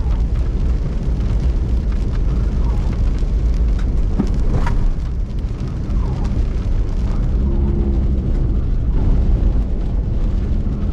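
Vehicle driving on a wet dirt road, heard from inside the cabin: a steady low rumble of engine and tyres, with occasional sharp ticks and knocks.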